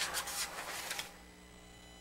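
Faint rustling and scratching of paper being handled at a desk microphone, stopping about a second in.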